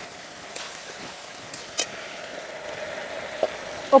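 Shallots, capsicum and green chillies sizzling in sauce in a wok, with a few clicks and scrapes of a metal spatula against the pan.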